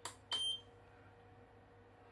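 A button pressed on a small digital scale gives a click, then the scale answers with one short, high beep.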